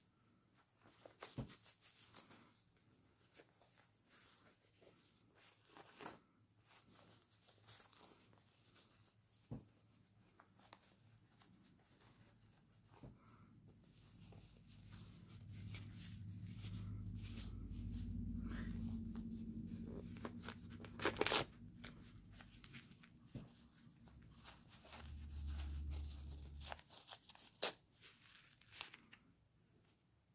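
Disposable diaper being fitted by hand, with scattered crinkles and rustles of its papery plastic and the tape tabs being pulled open and pressed shut. A low rumble of handling swells in the middle. Two sharper ripping sounds stand out, the loudest about two-thirds through and another near the end.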